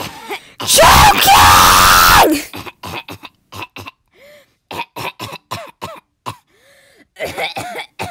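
A voice acting out choking: about half a second in comes a loud, distorted yell lasting nearly two seconds, followed by a run of short, quick coughs and gagging sputters with a couple of small croaks.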